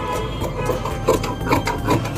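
Tailor's scissors cutting through blouse fabric on a wooden table: a quick series of crisp snips, about four a second, louder in the second half.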